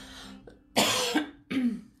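A person coughing twice, two short harsh coughs about three-quarters of a second apart, the first a little longer.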